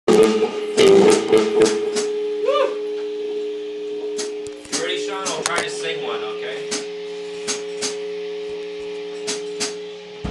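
Steady held notes from a rock band's amplified instruments ringing under scattered clicks and knocks, with a short rising-and-falling glide about two and a half seconds in.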